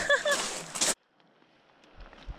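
Laughter over a hissing background noise, cutting off abruptly about a second in to near silence with only a faint hiss.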